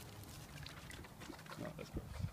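Dogs snuffling at the ground and rustling through dry leaves and mulch while hunting for treats: a string of short scratchy, snuffly sounds.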